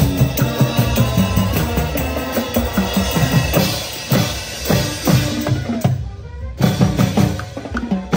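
Youth marching band playing live: sustained brass, with sousaphone bass, over a marching drum line of bass drums, snares and cymbals. About six seconds in, the band cuts off for about half a second, then comes back in with sharp drum strikes.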